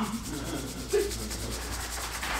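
Rapid, even ticking of a digital prize-wheel spinner's sound effect as the on-screen wheel spins.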